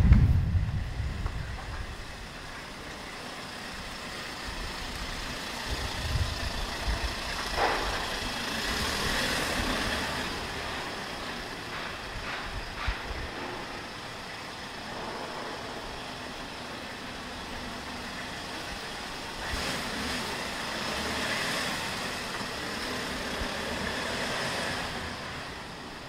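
Street ambience with motor vehicle traffic: engine and tyre noise swelling and fading twice as vehicles pass. There is a heavy low thump at the very start.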